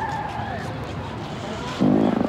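A loud, low, buzzing fart sound that starts suddenly near the end, the prank fart.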